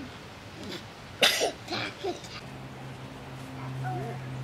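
A person's short, sharp cough about a second in, with small faint vocal sounds around it. A low steady hum comes in just after halfway and keeps on.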